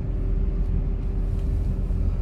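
A steady low outdoor rumble, with a faint steady hum that fades out about one and a half seconds in.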